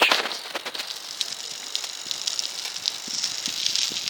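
A bicycle being ridden, rattling and ticking with many small knocks over a steady hiss, with a louder knock right at the start.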